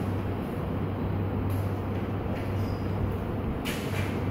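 A steady low hum with even room noise throughout. Near the end, a brief swish of a whiteboard eraser wiping the board.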